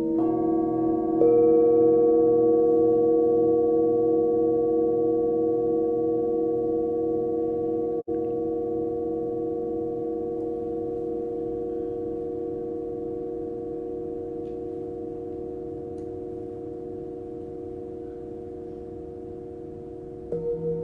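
Tibetan singing bowls struck with mallets, two strikes about a second apart at the start, then several bowls ringing together with a slow wavering beat, fading gradually. The sound cuts out for an instant about eight seconds in.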